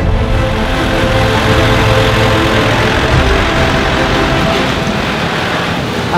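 Kubota tractor's diesel engine running steadily, with music faintly beneath.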